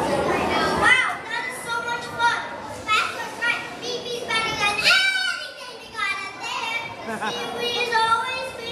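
Children's high-pitched voices, many at once, talking and calling out over each other in a large hall. A denser crowd noise fades out about a second in.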